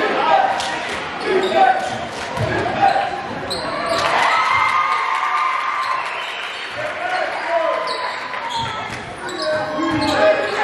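Basketball dribbled on a hardwood gym floor during live play, with scattered thuds and indistinct shouting from players and spectators, all echoing in the gym.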